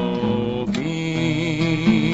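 A hymn sung with guitar accompaniment, the voice holding a wavering note toward the end.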